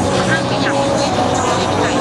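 Dense crowd babble: many overlapping voices of fans pressed close together, with a few higher voices calling out above it.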